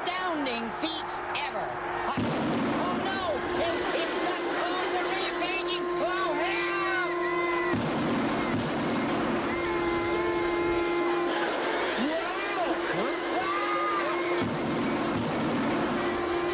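Bagpipes playing a steady drone, with squealing, sliding wails and shrieks over it. The drone drops out briefly several times amid stretches of rough, scuffling noise.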